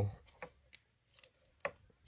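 A few faint, scattered clicks and taps from a hard plastic trading-card case being handled.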